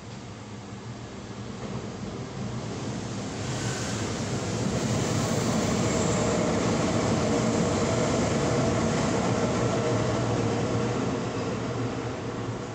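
A vehicle passing by: a rumbling noise that swells over the first few seconds, holds loud through the middle, then starts to fade near the end.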